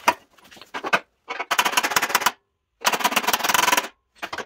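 Hammer blows on the sheet-steel running board: a few single knocks, then two fast runs of rapid strikes, each about a second long.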